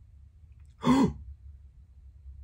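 A man's short voiced sigh about a second in, falling in pitch, over a low steady room hum.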